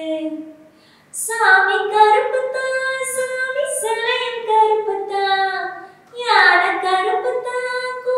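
A woman singing unaccompanied, holding notes and stepping between them in short phrases, with brief pauses about a second in and again about six seconds in.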